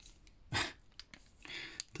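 Faint breathing and a short throat sound from a person, with a few small clicks of small metal parts being handled on a plastic bag.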